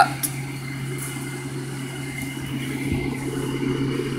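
Steady low electrical or mechanical hum with a faint steady high tone, room background; no distinct event apart from one faint click just after the start.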